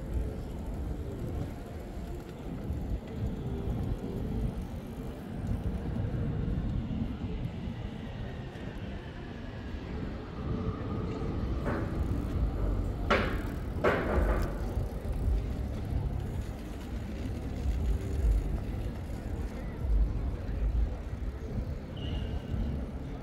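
City street ambience: a steady low rumble of road traffic with passers-by in the background. A few brief sharp clatters come just past the middle.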